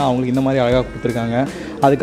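A man's voice holding long, wavering vowel sounds, with background music under it.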